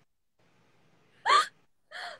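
A young woman's voice making a short, rising vocal sound, a quick gasp-like burst, about a second in, followed by a second, softer one at the end, amid laughter.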